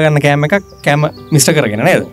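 A man talking in Sinhala, in short phrases with brief pauses between them.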